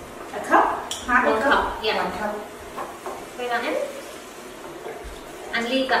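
Indistinct women's voices over a wooden spoon stirring in a cooking pot, with a sharp knock about a second in.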